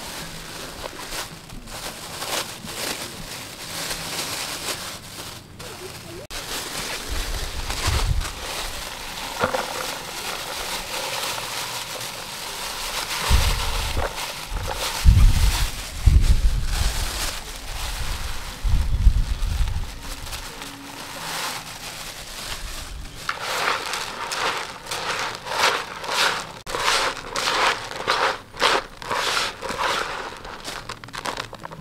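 Hands working cooked rice and a dry grain meal in a plastic basin, with plastic bags crinkling. Near the end the bait is kneaded by hand in a quick run of scrunching strokes. Low rumbling thumps come and go in the middle seconds.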